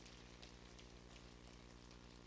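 Near silence: room tone with a steady low hum and a few faint crackles.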